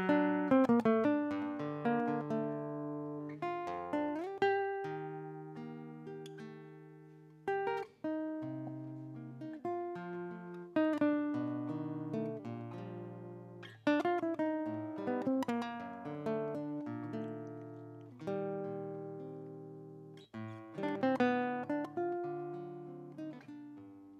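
Solo acoustic guitar playing the plucked, arpeggiated introduction to a folk song: phrases of ringing notes that die away, with short breaks between phrases.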